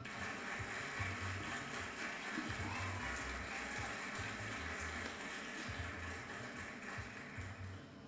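A recorded solo piano piece, an amateur recital performance, played back as a soundtrack with a steady hiss over it. It starts right at the beginning.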